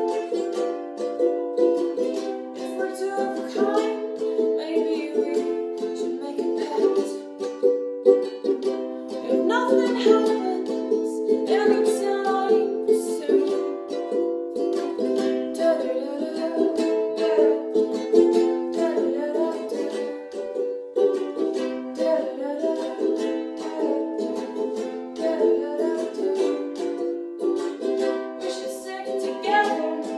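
Ukulele strummed continuously, playing the chords of a slow song in a small, bare room, with a woman's singing voice over it at times.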